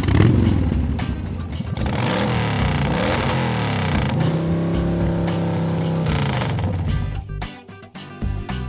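Motorcycle engine sound effect for the toy Catcycle riding off: it revs up and down a few times, then holds a steady pitch and dies away about seven seconds in.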